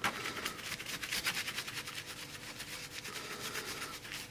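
A paintbrush scrubbing black printing ink into the grooves of a shellacked collagraph plate, in quick repeated scratchy strokes.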